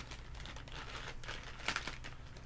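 Soft plastic baby-wipes pouch crinkling as it is handled and a wipe is pulled out, with a quick cluster of rustles near the end.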